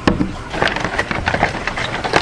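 Packaging being handled: a cardboard box and plastic sheeting rustle and crackle, with a sharp knock right at the start.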